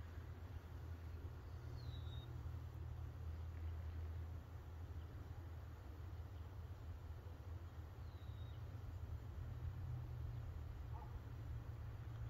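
Quiet outdoor background: a steady low hum, with two faint, short, high bird chirps, one about two seconds in and another near eight seconds.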